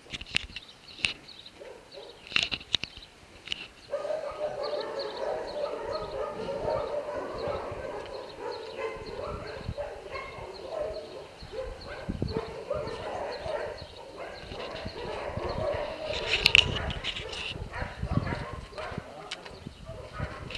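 Many kennelled dogs barking and yelping from behind the shelter fence. A few separate barks come first, then from about four seconds in a dense, continuous chorus of barking, with a louder burst of barks near the end.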